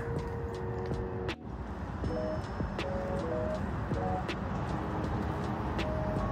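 Quiet background music, a simple melody of short held notes, over a steady low outdoor rumble. The sound drops out briefly about a second and a half in.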